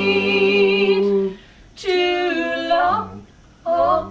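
Two women and a man singing in close vocal harmony: a held chord that ends about a second in, then short unaccompanied phrases with pauses between, the second falling in pitch at its end.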